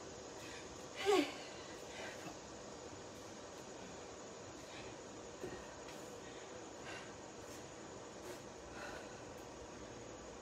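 A woman's loud gasp-like exhale about a second in, falling steeply in pitch, as she ends a set of kettlebell swings. Faint breaths follow every second or two while she recovers.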